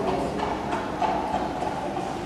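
Horse hooves clip-clopping, a recorded sound effect, at a few steps a second, over a murmur of voices.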